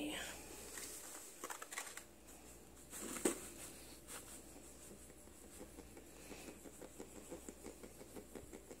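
Kosher salt trickling from a cardboard box into a small bowl on a kitchen scale: a faint, irregular patter of grains with a few light clicks and rustles from the box, the clearest click about three seconds in.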